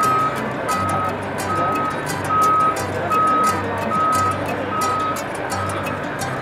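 A heavy vehicle's reversing alarm beeping steadily, one single-tone beep a little more than once a second, over background music with a steady beat.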